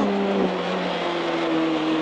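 Renault Clio Williams rally car's 2.0-litre four-cylinder engine heard from inside the cabin, running at a near-steady pitch under load, with road and wind noise.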